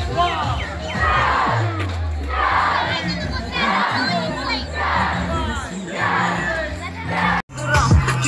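A crowd of many voices shouting and cheering, swelling in waves about once a second, over background music; it cuts off abruptly near the end.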